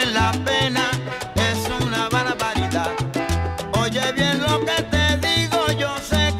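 A salsa dura track plays in a DJ mix, with a bass line repeating notes in a steady pattern under dense horn and vocal lines.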